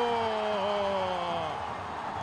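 A male sports commentator's long drawn-out shout on a goal call, one held vowel slowly falling in pitch before trailing off near the end.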